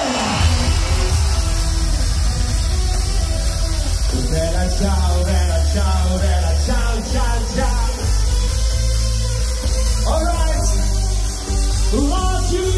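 Loud amplified pop music: a male singer performing live with a microphone over a backing track with a heavy, steady bass.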